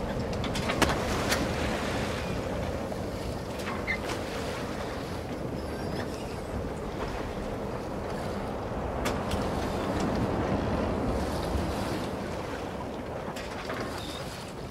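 Sea ambience: a steady wash of waves and wind, with scattered light clicks and knocks through it.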